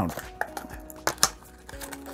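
A few light clicks and taps from a pocket knife and cardboard toy packaging being handled.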